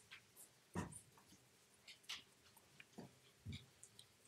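Near silence with a few faint knocks and rustles of a microphone and its cables being handled while the sound system is being set up.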